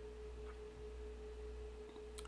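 A faint, steady pure tone of one unchanging pitch, with a low hum beneath it and a faint tick about half a second in.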